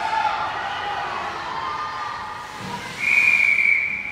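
Referee's whistle blown once near the end, a single steady shrill blast about a second long, the signal that stops play after the goalie covers the puck. Before it, raised voices carry across the arena.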